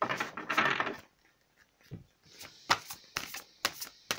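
A deck of oracle cards being shuffled by hand for about the first second, then several sharp clicks and taps as the cards are handled.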